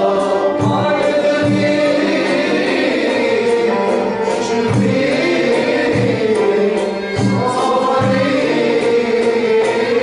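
Arab-Andalusian malouf ensemble performing in the hsine mode: a chorus of voices singing together over accompanying instruments, with drum strokes marking the rhythm throughout.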